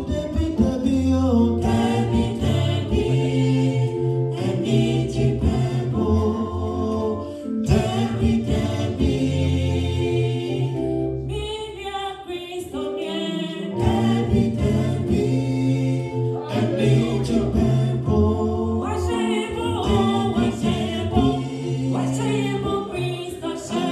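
A four-voice gospel group, two women and two men, singing a gospel song in harmony through handheld microphones, over a strong low bass part. The low part drops out briefly about twelve seconds in.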